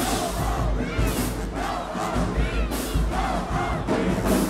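Crowd of voices shouting and cheering between band pieces, with several high calls rising and falling in pitch.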